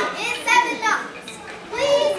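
High-pitched young voices calling out: two calls in the first second and another rising near the end.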